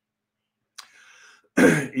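A man clears his throat once, a short sharp burst near the end, after a faint noise.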